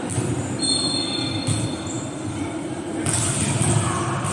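Echoing indoor sports-hall noise from a volleyball court: a steady rumble of the hall with scattered knocks. A thin high squeak-like tone starts about half a second in and lasts about a second and a half.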